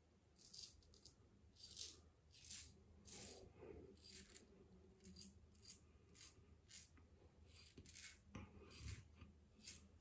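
PAA Symnetry double-edge safety razor scraping through lather and stubble in a quick series of short, faint strokes, about one or two a second.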